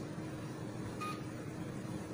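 HIFU machine giving one short electronic beep about a second in, over its steady low hum. The beep marks a pulse fired while the handpiece runs in automatic mode.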